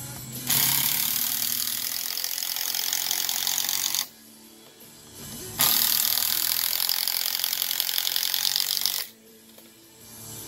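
Cordless power driver sinking screws into deck lumber: two runs of about three and a half seconds each, separated by a short pause.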